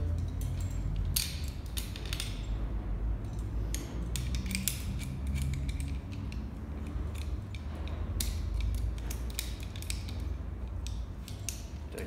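Metal rope-access hardware clicking and clinking in irregular clusters as a backup device is fitted onto the rope and carabiners are handled, over a steady low hum.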